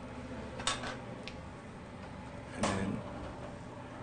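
Kitchen room noise: a steady low hum with a few light clicks and clinks of dish handling about a second in, and one short louder sound a little past halfway.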